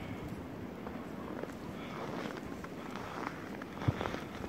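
Footsteps creaking and crunching in deep, fresh snow.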